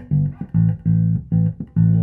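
Electric bass guitar played through the DSM & Humboldt Simplifier Bass Station preamp and sent to a bass cabinet through a power amp: about five short, separated plucked notes, the last held longer.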